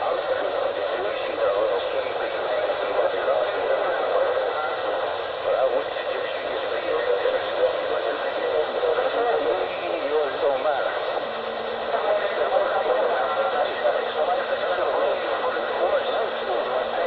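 A man's voice, faint and muffled, heard through a thin, low-quality audio line under a steady hiss; the words can't be made out.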